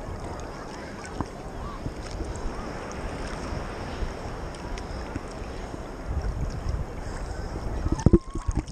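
Wind buffeting the camera microphone over a steady wash of sea surf on a beach.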